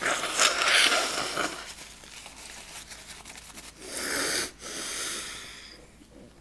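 A person's breath close to the microphone: a long, loud, noisy exhale at the start that fades out, then two shorter breaths about four seconds in.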